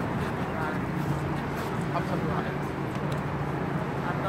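City street ambience: a steady low hum of road traffic with faint voices of passers-by.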